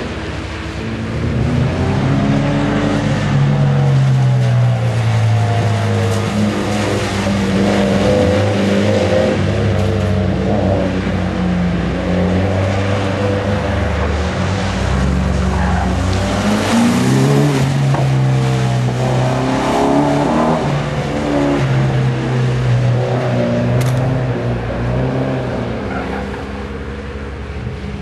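Mitsubishi Lancer Evolution's turbocharged four-cylinder engine revving up and down over and over as the car is held in slides on a very slippery, water-covered skid pan, the pitch rising and falling with each throttle change.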